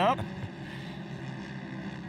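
Engines of a pack of Pro Modified side-by-side UTV race cars running at speed on the track, heard as a steady drone.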